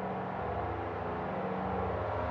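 A steady low hum made of several held low tones, with a faint hiss above it.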